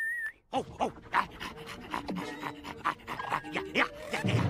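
Cartoon bulldog panting in quick, repeated breaths, after a short wavering whistle at the very start.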